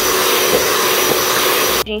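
Electric mixer with twin beaters running at speed, creaming butter in a bowl: a loud, steady motor noise with a thin whine, cutting off suddenly near the end.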